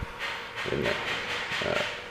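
Old Kone traction elevator car in motion: a steady hiss and faint hum of the ride, with a brief low word about a second in.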